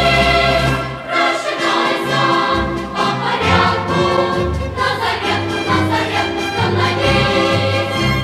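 Soundtrack music: a choir singing held notes over a low, shifting bass line.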